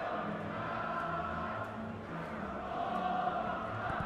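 Several voices singing long held notes together.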